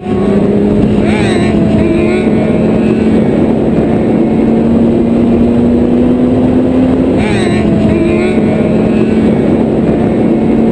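Sport-bike engines running at highway speed, with a steady engine drone and heavy rushing noise. The engine note climbs slowly and drops back at a gear change about seven seconds in, with a short rise and fall in pitch near the start.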